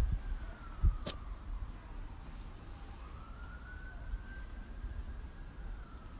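A faint siren wailing, its pitch slowly falling, rising and falling again, over a low rumble. A single sharp click comes about a second in.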